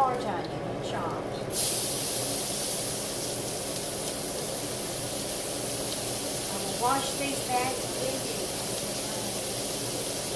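Chopped onions hitting hot lard in a cast-iron skillet: a sizzle starts suddenly about a second and a half in and then runs on steadily.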